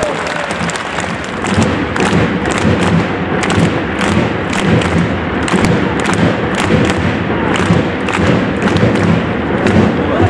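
Stadium crowd of football supporters beating out a steady rhythm, thumps and claps together about two to three times a second, over a constant crowd din; the beat sets in about a second and a half in.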